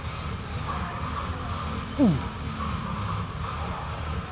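Background music with a steady beat. About two seconds in comes one short, loud grunt falling in pitch: a lifter's effort sound during a hard rep on a row machine.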